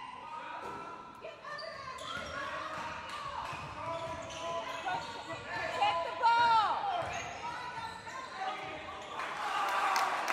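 Live sound of a basketball game in a large gym: the ball bouncing on the hardwood court, voices calling out indistinctly, and a burst of high, gliding sneaker squeaks about six seconds in, all echoing in the hall.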